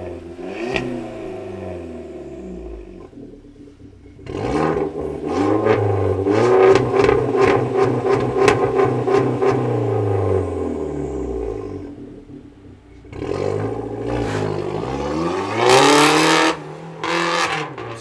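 Volkswagen Golf 6 1.4 turbo four-cylinder engine through a modified valved exhaust (catalytic converter removed, flame arrestor fitted, straight pipe in place of the resonator, dual stainless tip), revved from idle. A first rev comes about four seconds in, is held for several seconds and falls back. A second rev rises to its loudest point near the end, cuts off sharply, and is followed by a short blip.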